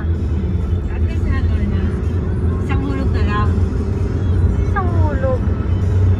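Steady low road and engine rumble inside a moving car's cabin, with a voice heard in three short stretches over it.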